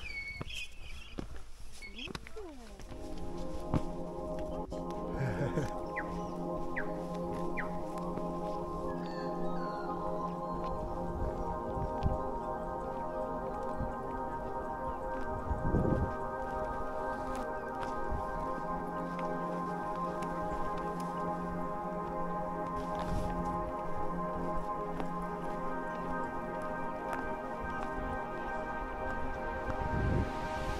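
Background music with held, sustained chords, coming in about three seconds in and carrying on steadily to the end.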